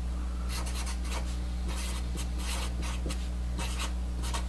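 Sharpie felt-tip marker writing on paper: a quick run of short pen strokes as symbols are written out. A steady low electrical hum sits underneath.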